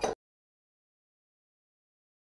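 Dead silence: the sound track drops out completely just after the very start, following the clipped end of a spoken word.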